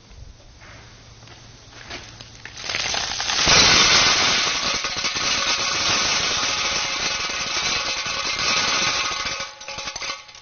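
A colander-load of river snails pouring into a steel hopper, a dense clatter of shells rattling on metal. It starts about three seconds in and stops just before the end.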